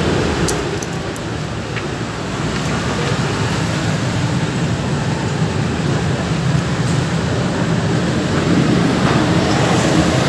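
Steady road traffic noise with a few faint clicks.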